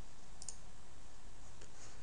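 A faint computer mouse click about half a second in, selecting an item from a software drop-down list, over a steady low hum.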